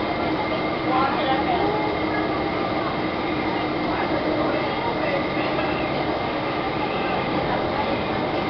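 Steady engine and road noise inside a moving city transit bus, with passengers' voices in the background.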